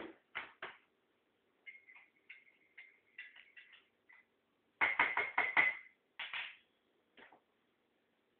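Mug and plastic milk jug being handled on a kitchen worktop: a sharp knock at the start, then light clinks with a ringing note, and a quick run of about six louder clinks and knocks around five seconds in.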